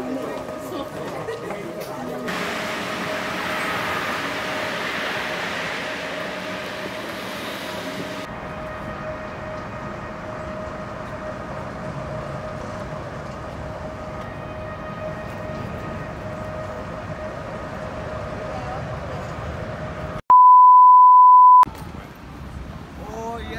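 Steady background ambience with a faint hum, then about 20 seconds in everything else drops out for a loud electronic bleep of one steady pitch lasting about a second and a half: a censor bleep.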